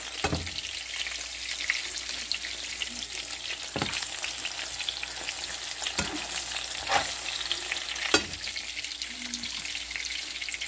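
Eggs frying in shallow oil in a nonstick pan, a steady crackling sizzle, with several short sharp knocks as a plastic spatula works the eggs in the pan.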